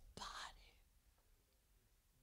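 One softly spoken word, then near silence: room tone.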